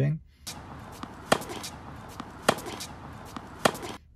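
Tennis ball impacts on a court: sharp knocks, the three loudest about a second apart with fainter ones between, over a steady outdoor hiss.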